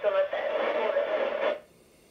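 A voice from the International Space Station's 145.800 MHz FM downlink, heard through a Yaesu transceiver's speaker, thin and noisy. It cuts off suddenly about one and a half seconds in, leaving near silence.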